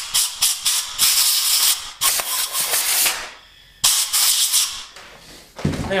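Compressed-air blowgun blasting acetone cleaner out of a freshly tapped head-bolt hole in an aluminium LS V8 block. A run of short hissing puffs is followed by two longer blasts of about a second each, then one more brief blast.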